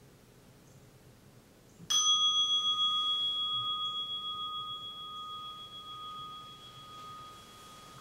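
A meditation bell struck once about two seconds in: a clear ringing tone with a higher overtone that fades slowly and is still sounding at the end. It marks the close of a 30-minute Zen meditation sit.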